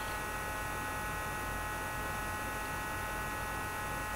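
Steady electrical hum and hiss, with several faint high steady tones, unchanging throughout.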